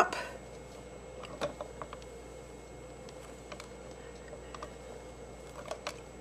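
A few faint, scattered clicks and light taps from hands handling cardstock, a paper mask and a stamping platform, over a low steady hum.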